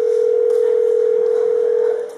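A telephone ringing tone heard by the caller: one steady electronic tone lasting about two seconds while the call rings at the other end.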